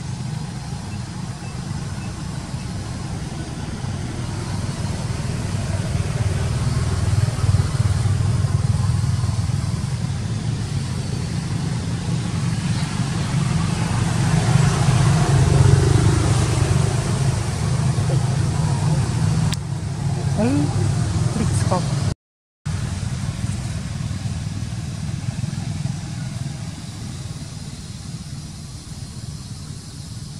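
Low engine rumble that builds to its loudest about halfway through and fades toward the end, with a brief cut-out about two-thirds of the way in.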